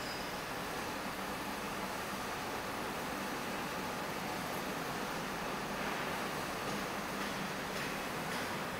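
Steady workshop noise, an even hiss with a faint low hum underneath, unchanging throughout.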